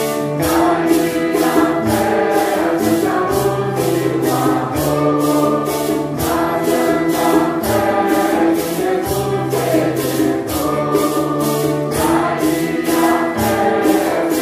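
A mixed congregation singing a Santo Daime hymn in unison, accompanied by a steady, even beat of hand-shaken maracas.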